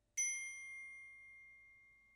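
A single high, ringing note struck on a metal percussion instrument, sounding suddenly and then fading slowly over about two seconds in an otherwise quiet pause of the music.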